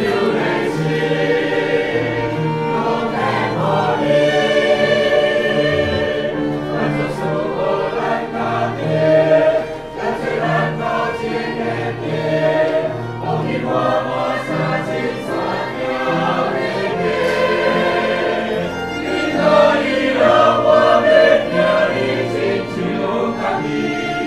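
Mixed church choir singing a hymn, with instrumental accompaniment.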